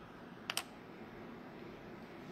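Two quick, sharp clicks about half a second in, over faint room tone.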